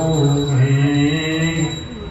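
A man's voice chanting a devotional mantra in long, drawn-out notes, the phrase starting again about every two seconds. A faint, steady high tone runs underneath.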